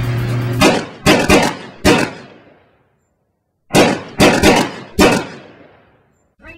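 Background music stops abruptly about half a second in. It is followed by four sharp bangs in quick succession, each ringing away, a second of silence, then four more sharp bangs that fade out.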